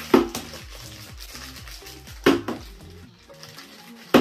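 A partly filled plastic water bottle being flipped and landing on a table: two sharp knocks, one just after the start and one a little after two seconds in, with lighter clatter between. Background music with a steady bass line runs underneath.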